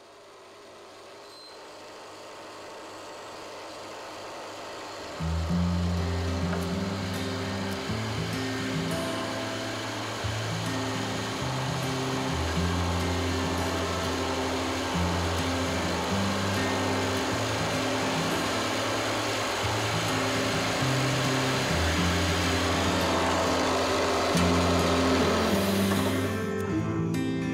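A power drill boring into wood gives a steady whir, under background music whose bass line comes in about five seconds in.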